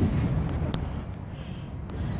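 Low, unsteady rumble on the phone's microphone with a few light clicks, as the phone is handled and grabbed at close range.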